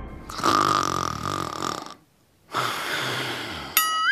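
Cartoon snoring sound effect: two long snores, the second ending near the end in a short whistle that rises and falls.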